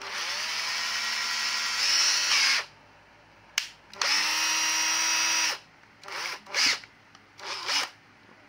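National 12V cordless drill-driver's motor whining under the trigger, run twice for a couple of seconds each, then given a few short blips.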